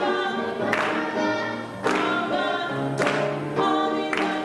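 Church youth choir singing a gospel song, with hand claps about once a second.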